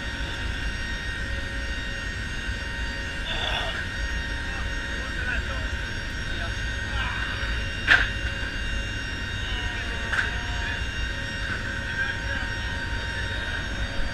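Steady drone of a C-130J's four turboprop engines heard from inside the cargo hold: a low rumble under a constant high whine. A single sharp knock about eight seconds in.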